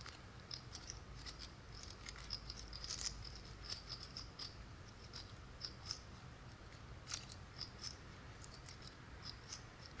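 Poker chips clicking faintly and irregularly as they are handled at the table, over a low steady room hum.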